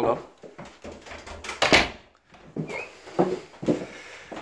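A front door unlatched and pulled open, with a short rush of noise about halfway through.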